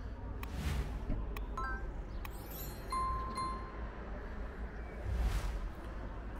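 Sound effects of a subscribe-button animation: a whoosh about half a second in, a couple of mouse clicks, a sparkling chime and a bell ding around three seconds, and another whoosh near the end, over a low steady rumble.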